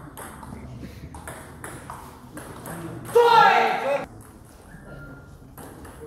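Table tennis ball clicking off bats and the table, with short sharp ticks through the serve and rally. About three seconds in, a loud voice calls out for about a second.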